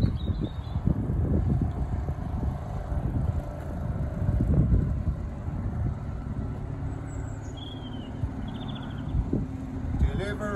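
Small Mariner outboard motor running steadily, driving a loaded dinghy away across the water, with a low rumble throughout.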